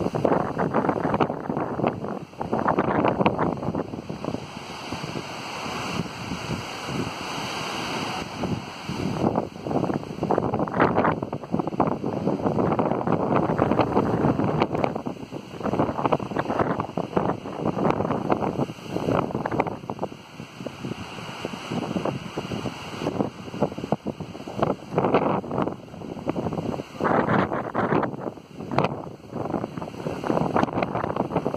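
Strong gusty wind buffeting the phone's microphone, surging and easing every few seconds as the gusts come and go.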